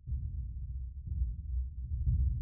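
Deep, low pulses of a cinematic intro soundtrack, one about every second over a held low rumble, getting louder.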